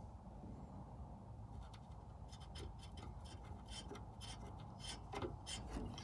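Felt-tip marker making light marks on a sheet-metal panel: a run of faint, quick scratches from about a second and a half in, over a low steady hum.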